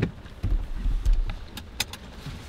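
Low rumble inside a car cabin with a handful of sharp ticks, several close together past the middle, from ice pellets striking the car's glass and body.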